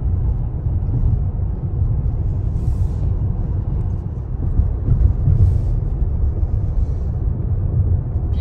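Steady low road and tyre rumble inside the cabin of a Tesla electric car cruising at about 50 mph.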